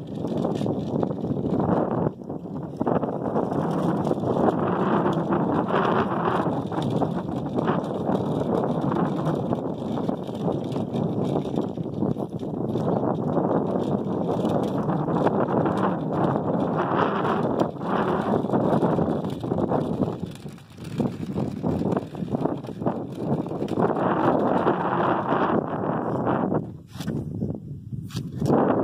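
Truper measuring wheel rolling over rough concrete and gravel, a continuous rolling noise with many small clicks, easing off briefly about twenty seconds in and again near the end.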